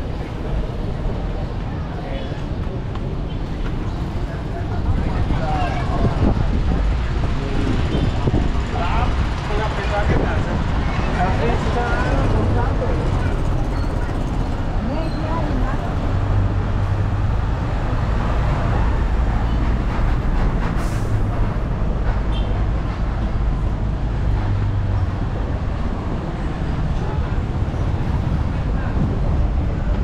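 Street traffic noise: motor vehicles on a cobblestone street, with a steady low engine hum from about sixteen to twenty-five seconds in. People talk in the background.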